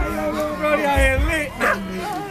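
Voices of people in a group, with a few short low thumps about a second in.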